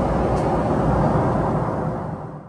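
Airliner cabin noise in flight: the steady, even, low-pitched rush of engines and airflow heard from inside the cabin.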